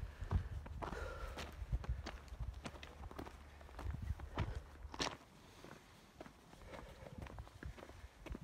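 Hiking footsteps crunching on loose rock and gravel on a dirt trail, at an uneven walking pace, with a low rumble in the first half.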